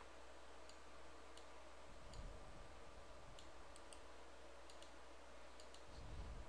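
Faint computer mouse clicks, about eight of them scattered irregularly, over a low steady hum.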